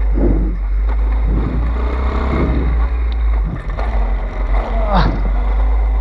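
Small pit bike engine running as it is ridden, with heavy wind rumble on the bike-mounted camera's microphone.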